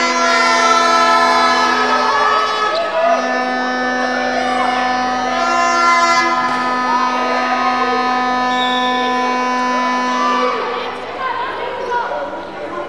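A long, steady, droning horn-like tone holds for several seconds, breaks off about two seconds in, then resumes, over the noise of a handball match in a sports hall: the ball bouncing on the court and voices.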